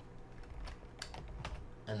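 Computer keyboard typing: a few irregular key clicks.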